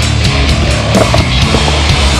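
Loud rock music, with the rolling and landing of a BMX bike's tyres on concrete about a second in.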